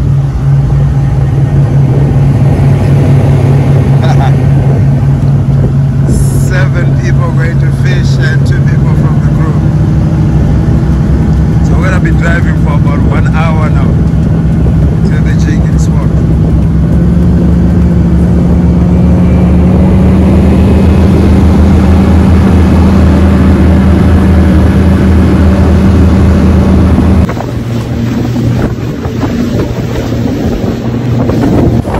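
Motorboat engine running loud and steady, its pitch rising in steps as it is throttled up. About 27 seconds in it gives way to wind buffeting the microphone on the open sea.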